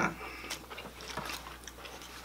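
Faint tabletop eating sounds: soft scattered clicks and rustles as fried chicken is handled, with some chewing.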